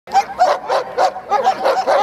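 German Shepherd Dog barking in a quick, unbroken string of high, excited barks, several a second, while held back at the handler's side.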